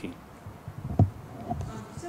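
Quiet room tone with a faint low murmur, and one sharp knock about a second in.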